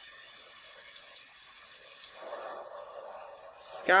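Faint steady hiss, then a picture-book page being turned: paper rustling for about a second and a half near the end, finishing with a short crisp flick.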